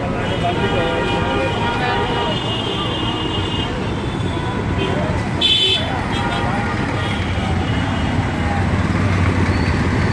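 Busy street traffic with passers-by talking. A vehicle horn sounds steadily for about three seconds near the start, and a short, high horn beep comes about halfway through.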